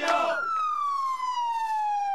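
Ambulance siren wailing: one long tone sliding steadily down in pitch.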